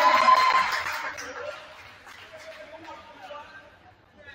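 Gym crowd cheering and shouting after a made free throw, fading out within about a second and a half to faint scattered voices in the hall.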